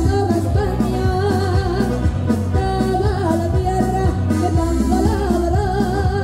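A woman singing while playing a piano accordion, over a steady, rhythmic bass line.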